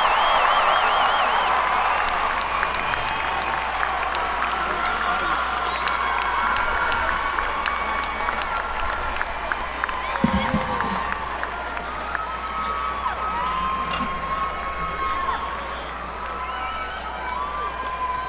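Large amphitheatre crowd cheering, applauding and whistling in welcome as the band is introduced, heard from within the audience. Shrill trilling whistles stand out near the start, and the roar slowly dies down.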